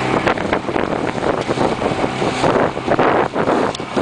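Outboard motor running as a small aluminium boat crosses choppy water, with heavy wind buffeting on the microphone.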